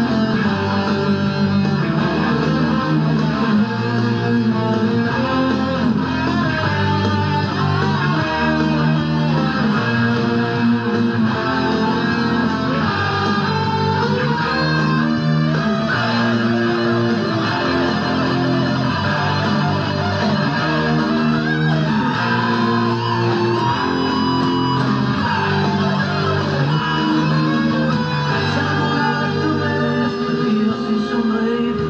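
Electric guitar playing melodic lead lines and riffs over a full band backing, with a bass line stepping through notes underneath; no singing in this instrumental passage.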